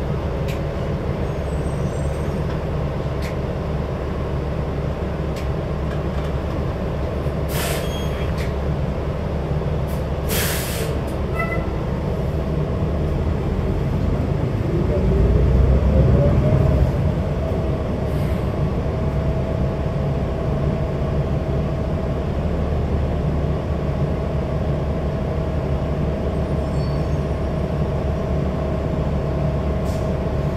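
Cabin sound of a New Flyer Xcelsior XD60 articulated bus under way: a steady low drivetrain hum, with two short air hisses from the air brake system about 8 and 10 seconds in. About 13 seconds in, a whine rises in pitch and the sound swells to its loudest, then settles into a steady tone.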